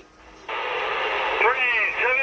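Anytone AT-6666 CB radio receiving on 27.385 MHz lower sideband: a thin, band-limited hiss comes up suddenly about half a second in, and a distant station's voice comes through it from about a second and a half in.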